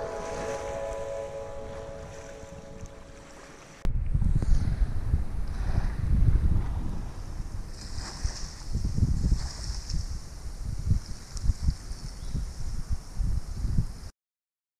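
Background music fading out over the first four seconds. After a sudden change about four seconds in, wind buffets the camera microphone in uneven gusts while small waves lap on a sand beach.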